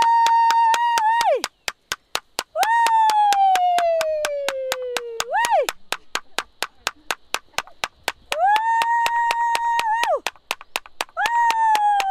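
A woman singing a Bhutanese traditional song in a high voice, in long drawn-out notes: some held level, others sliding slowly down in pitch and ending with a quick upward flick, four phrases with short gaps between. Under the voice an even ticking runs at about four or five a second.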